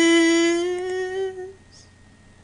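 A single voice humming one long held note that drifts slightly upward and fades out about a second and a half in.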